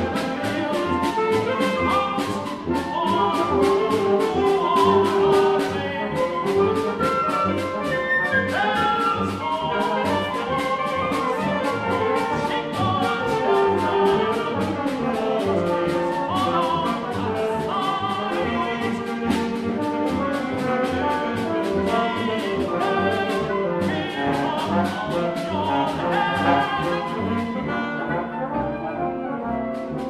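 Mixed chamber ensemble of winds, brass, strings and percussion playing, with brass to the fore and a steady clicking beat running through.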